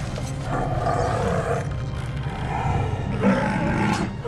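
Film battle soundtrack: the cave troll's roars over orchestral score, with the clatter of the fight.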